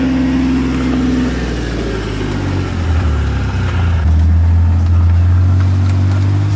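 Kawasaki Mule side-by-side utility vehicle driving, its engine running steadily; about four seconds in the engine note deepens and grows louder.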